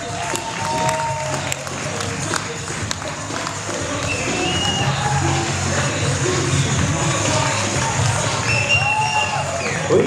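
Guests clapping and cheering, with music playing underneath.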